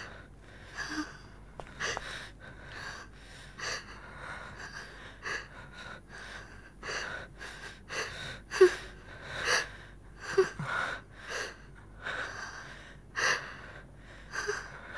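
A couple breathing heavily and gasping in short breaths while kissing, about one breath a second, a few of them sharper and louder in the second half.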